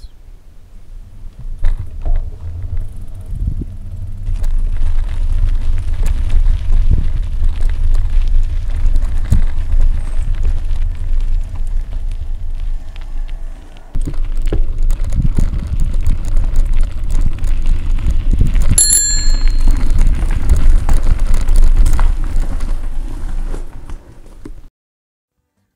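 Heavy wind buffeting on a clip-on microphone while riding a bicycle, with a bicycle bell rung once about three-quarters of the way through.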